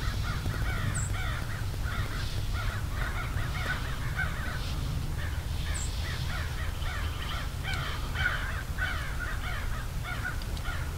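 A large flock of birds calling continuously over one another in many short, overlapping calls, over a steady low rumble. A few faint high chirps cut through about a second in and again just before six seconds.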